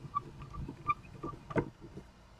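Colido 3.0 printer's extruder stepper motor feeding filament into the printhead: a run of short, high-pitched ticks, several a second, with a sharper click about one and a half seconds in.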